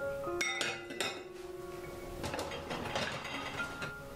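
Glass clinking against a glass jar a few times in the first second, then liquid poured into the large glass jar, which is being topped up with water before it is sealed for pickling. Soft background music with held notes plays underneath.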